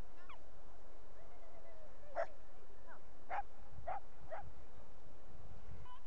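A dog barking, four short barks spread over a couple of seconds starting about two seconds in, with a few fainter whining calls before them. Under it runs a steady low rumble of wind on the microphone.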